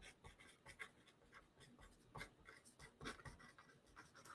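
Faint scratching of writing on a sheet of paper: a handful of short, quiet strokes.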